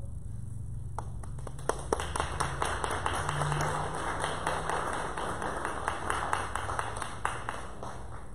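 Small audience clapping: a few separate claps about a second in, quickly filling into steady applause that dies away near the end.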